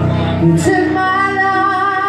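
Live female vocal with keyboard and acoustic guitar accompaniment. About two-thirds of a second in, the singer settles into one long held note with a slight waver.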